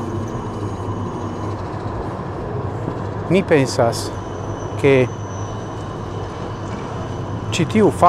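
A few short spoken syllables from a voice, separated by pauses, over a steady low background rumble with a faint hum.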